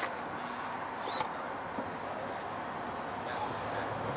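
Steady outdoor background noise with a few faint clicks and a short high chirp about a second in.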